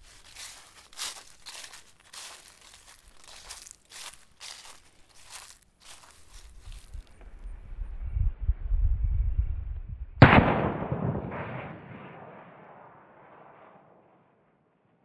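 A single .357 Magnum revolver shot about ten seconds in, hitting a fire extinguisher, which bursts and vents its contents in a rushing hiss that fades over about three seconds. Before that comes a series of short crisp rustles in dry leaves, about two a second, then a low rumble.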